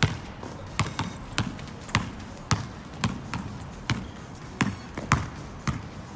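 A basketball being dribbled on a tiled court, bouncing about twice a second.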